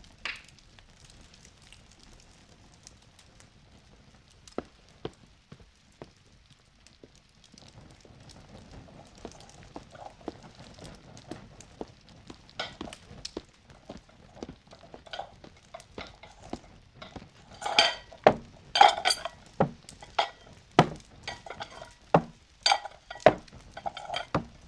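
Earthenware bowls knocking and clattering on a wooden table as they are set out from a stack, the knocks getting louder and more frequent in the second half. Light, scattered crackling from bonfires sits underneath.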